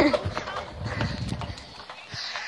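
Footfalls of someone running with a handheld phone, a run of irregular low thuds with the phone jostling.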